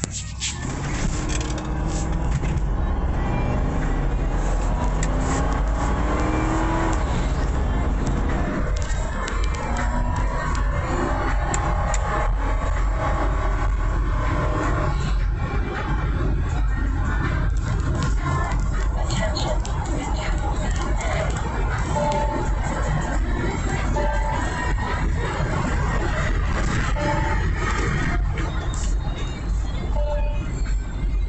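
Ford 5.4 Triton V8 heard from inside the cabin of a 2001 Ford Expedition, accelerating hard from low speed. The engine note climbs for several seconds and drops at an upshift about eight seconds in, then settles into a steady drone at highway speed.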